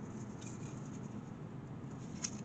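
Faint handling noise of small objects: light rustling with a few soft ticks.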